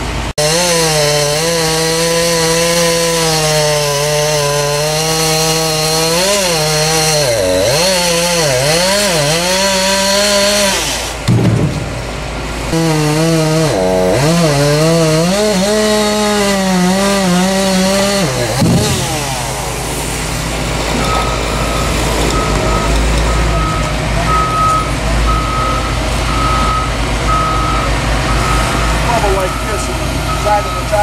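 Gasoline chainsaw cutting through a tree trunk, its engine pitch sagging under load and picking up again, with a short pause partway. The saw stops after about eighteen seconds, leaving a diesel engine running, and a reversing alarm starts beeping about once a second.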